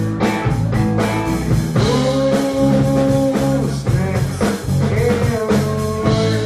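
Live rock band playing: electric guitar, bass guitar and drums, with a long held note about two seconds in.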